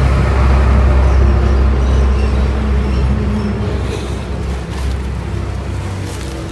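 A motor vehicle engine running with a loud, steady low hum that slowly fades over the last few seconds.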